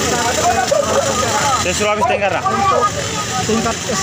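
Speech: a man talking, with other voices in the background.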